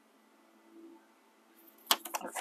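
Quiet room tone with a faint hum, then near the end one sharp, crisp click of the paper sticker strip being handled.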